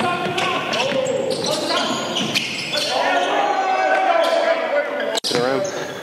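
Basketball bouncing on a hardwood gym floor and players calling out during a full-court scrimmage, echoing in a large gym. The sound cuts off abruptly for an instant about five seconds in.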